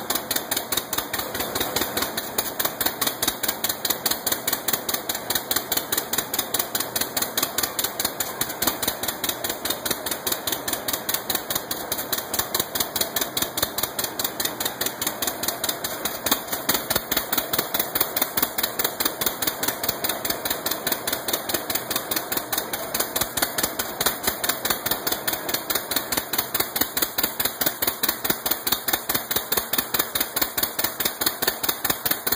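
Early vintage tractor engine running steadily on its first start under its owner, with an even, rapid exhaust beat that grows louder about two seconds in.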